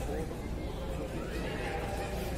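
Military brass band sounding held, wavering notes, mixed with voices, over a low rumble of wind on the microphone.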